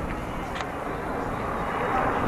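Roadside traffic noise, a steady rushing that slowly grows louder near the end as a vehicle approaches on the highway.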